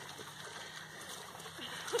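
Faint splashing and sloshing of a person crawling through a muddy water pit, with spectators' voices starting near the end.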